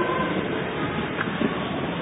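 Steady background hiss and rumble of the recording, with no clear events, slowly fading a little.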